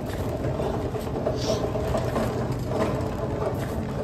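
A metal shopping cart rattling steadily as it is pushed along a hard store floor, over a continuous low hum.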